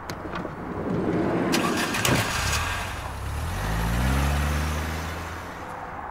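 A minivan pulling away: a thump about two seconds in, then its engine revving up with rising pitch and fading out near the end.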